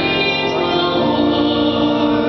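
Choir singing with long held notes, the chord changing about a second in.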